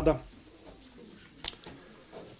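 A man's voice ending a word, then a pause in a small room with quiet room tone and one sharp short click about one and a half seconds in.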